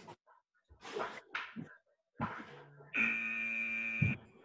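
Interval timer's buzzer sounding one steady tone for about a second near the end, marking the end of the 20-second work period and the start of the 10-second rest. Before it come short, sharp breaths and a grunt from people exercising.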